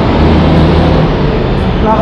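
Loud street traffic noise: the steady hum of a motor vehicle engine running close by.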